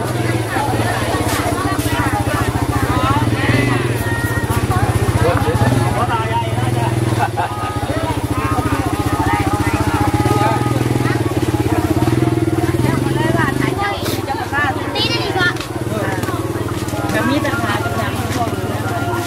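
A small engine running steadily close by, a low even hum with a fast regular pulse, under people talking.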